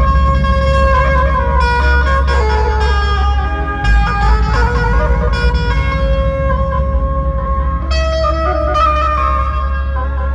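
A Chhattisgarhi dhumal band playing a song: a held melody line that steps and slides between notes over a heavy, steady bass and drums.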